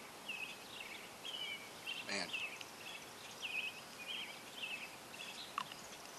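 Small birds chirping in the background, a long string of short high notes, over steady outdoor noise.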